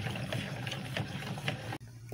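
Spatula stirring cornstarch into milk in a plastic jug, knocking and scraping against the jug's sides in a quick, irregular series of soft clicks over a steady low hum. The sound cuts off shortly before the end.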